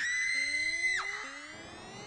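Electronic sound effect: a high whistle-like tone starts suddenly, holds for about a second, then drops sharply, while lower tones sweep slowly upward beneath it and fade out.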